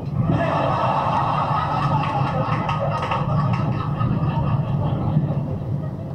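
Audience laughter from a stand-up comedy recording playing in the truck cab, rising just after the punchline and dying away near the end. Under it runs the steady drone of road and engine noise inside the cab at highway speed.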